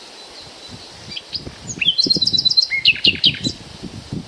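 Small birds chirping: scattered high chirps, then a quick run of short, evenly repeated notes in the second half, over a steady hiss and a faint low rumble.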